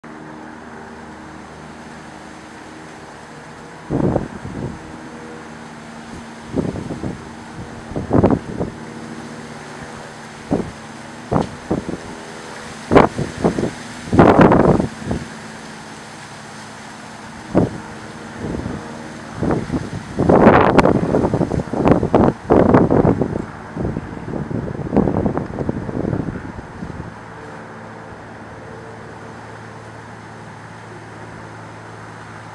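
Red-bellied woodpecker excavating a nest cavity in a dead tree trunk: irregular bursts of rapid pecking and chiselling into the wood. The bursts start about four seconds in and are densest in two clusters in the middle and later part. A steady low mechanical hum runs underneath.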